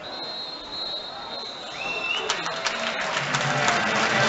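Football stadium crowd chatter with a thin, steady high tone, then background music with a beat coming in about halfway through and growing louder.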